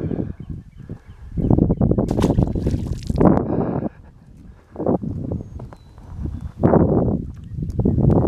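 Wind and handling noise on a handheld camera's microphone: irregular low rumbling bursts as the camera is moved about, with one brighter hissing rush about two seconds in.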